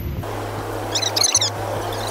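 A quick run of short, high bird-like chirps about a second in, over a steady low hum of street traffic.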